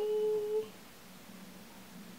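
A woman's short hummed "mm": one steady note of about half a second at the very start.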